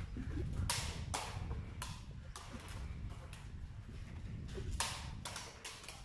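Hollow knocks of a sepak takraw ball being kicked and bouncing on a concrete floor: about half a dozen irregular, fairly faint knocks spread across a few seconds.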